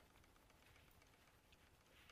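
Near silence: room tone, with faint soft scraping of a palette knife mixing paint on a palette.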